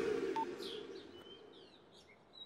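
Birds chirping faintly: a few short, high, sweeping calls. A loud noisy sound from just before is fading out over the first second.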